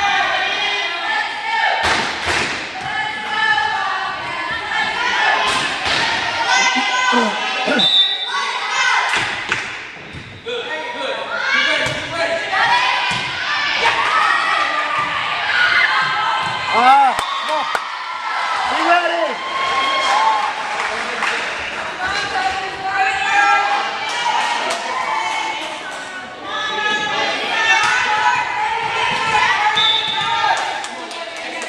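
Volleyball being played in a gymnasium: several thuds of the ball being struck and hitting the floor, over continuous chatter and calls from players and spectators.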